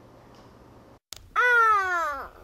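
A small child's voice drawing out one long, high syllable that falls in pitch: the Mandarin number 'èr' (two), counted aloud. It begins about a second and a half in, after a faint room hush and a click.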